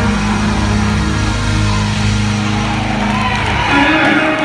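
Live band playing loud amplified music, electric guitars and drums, with low notes held steady.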